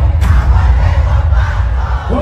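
Large concert crowd shouting and cheering, loud and continuous, over heavy bass from the sound system.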